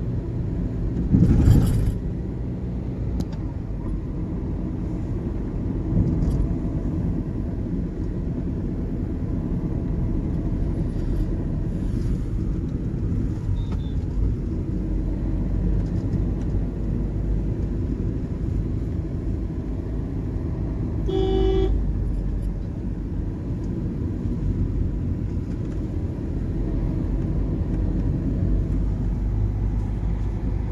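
Steady road and engine rumble of a moving car, heard from inside the cabin. A brief loud whoosh comes about a second in, and a vehicle horn sounds once, briefly, about two-thirds of the way through.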